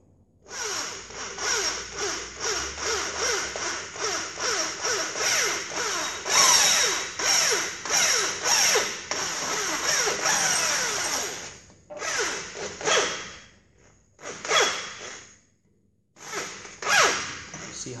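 Electric drill with a 6 mm bit boring through an oil gallery plug in an air-cooled VW engine case, run slowly in surges about twice a second with falling squeals as the bit cuts. It stops about 11 seconds in, then runs in three short bursts as the bit pulls into the plug.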